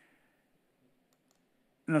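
A pause in near silence, broken by a few faint clicks of lecture slides being advanced; a man's voice begins near the end.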